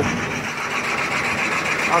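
Steady city street noise, the hum of road traffic, with no distinct events.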